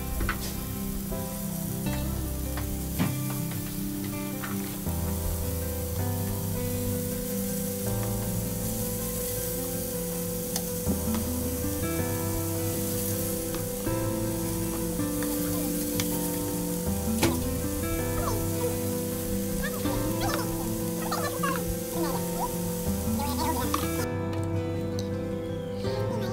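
Chicken strips sizzling on a butter-greased grill pan, a steady hiss that stops near the end, with a few light clicks of metal tongs as the pieces are turned. Background music with slow bass notes plays throughout.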